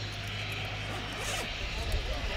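Airbus A400M's four turboprop engines at take-off power during the take-off run, heard across the airfield as a steady low propeller drone with broad engine noise above it.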